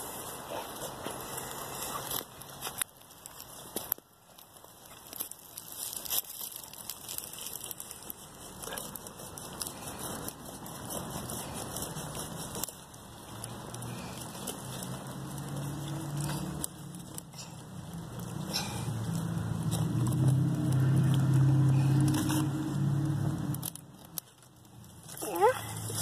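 Rustling and crackling from plants being handled and from the camera rubbing against clothing, with scattered clicks. In the second half a low hum builds over several seconds, then fades out shortly before the end.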